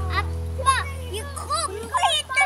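Young children's voices calling out and chattering over background music. The music is a held chord that fades away.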